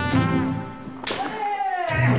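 Kendo sparring: sharp clacks of bamboo shinai striking, near the start and again about a second in, each followed by a drawn-out shout (kiai) that falls in pitch, over background music.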